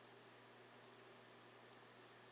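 Near silence with a steady low hum, broken by three faint computer mouse clicks, about one a second.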